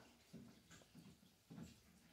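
Near silence: room tone with a few faint, short soft sounds.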